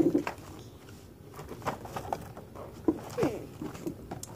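A few short wordless vocal glides from a child, like hums or coos, with faint tapping and rustling as a cardboard toy box is handled.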